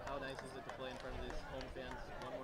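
Faint, indistinct speech: voices in the background, well below the level of close-up interview talk.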